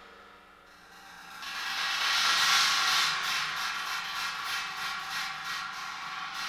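Drum-kit cymbals: a cymbal roll swells up about a second and a half in, then gives way to a quick, even run of light metallic strokes, about three a second.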